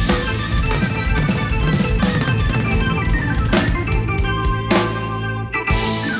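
Live rock band playing the closing bars of a song: drum kit with electric and acoustic guitars, bass guitar and keyboards. Heavy drum hits punctuate the bars, with a last accented hit near the end as the song finishes.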